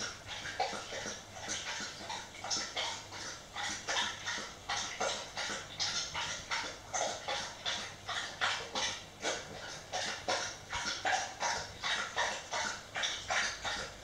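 A dog panting steadily, about three quick breaths a second.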